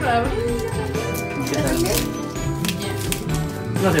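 Wrapping paper being torn and crinkled in short crackly bursts as a small gift is unwrapped by hand, over steady background music and voices.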